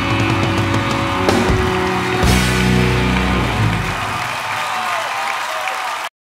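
Live rock band ending a song: sustained guitar and keyboard chords with two heavy drum and cymbal hits, the band stopping about four seconds in. Audience applause carries on into the end.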